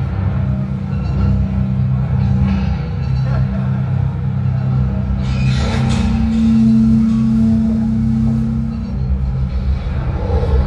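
Heavy band playing live through a club PA: low, droning guitars and bass fill the room, with a cymbal crash about five and a half seconds in and a note held for about three seconds after it.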